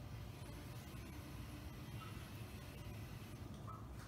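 Quiet room tone: a steady low hum with no distinct sounds.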